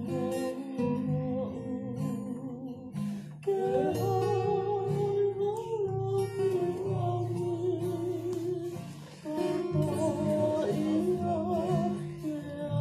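Men singing a Tongan kava-circle song in several-part harmony, with long held notes and vibrato over strummed acoustic guitars. New sung phrases come in about three and a half seconds in and again near nine seconds.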